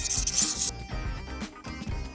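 A cartoon sparkle sound effect: a brief airy whoosh lasting about the first half-second, over soft background music.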